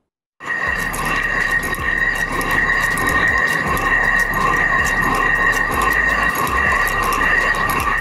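Hand-turned stone mill (chakki) grinding grain into flour: a continuous rasping grind of stone on stone with a steady high-pitched ring, starting about half a second in.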